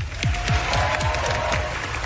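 Television studio audience applauding, with music playing under the applause.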